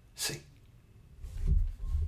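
A man's short, sharp exhale through the nose, a quick snort of laughter, about a quarter second in. Later come low bumps and rustling as his hands move near the microphone.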